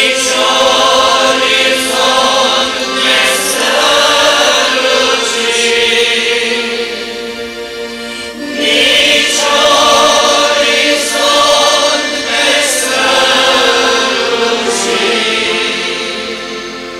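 A large congregation singing a Romanian hymn together, in two long sung phrases with a brief dip between them about halfway through.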